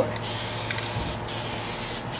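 Aerosol can of Plasti Dip spraying a steady hiss onto a wheel, broken briefly a little after a second in.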